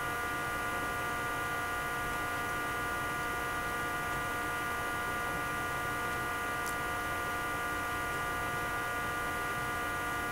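Steady electrical hum with several high, unchanging tones over a hiss. A faint high tick comes about two-thirds of the way through.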